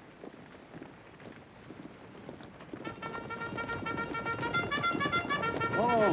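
Bugle call in short repeated notes, starting faint about three seconds in and growing louder as it approaches, over background noise that rises with it.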